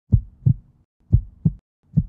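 Heartbeat sound effect: low double thumps, lub-dub, about one pair a second.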